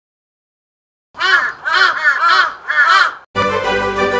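A crow cawing four times in quick succession, starting about a second in, after which music starts up near the end.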